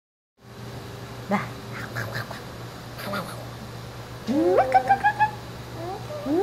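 Baby girl laughing: about four seconds in, a rising squeal breaks into a quick run of short, high "ah-ah-ah" notes. A few faint short vocal sounds come before it over a steady low hum.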